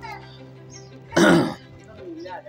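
A man clears his throat once with a short, harsh burst about a second in. A quieter, steady background music tone runs underneath.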